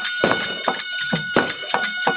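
Therukoothu folk-theatre ensemble playing: a drum beating a quick, regular rhythm under one long held high note, with bright metallic jingling over it.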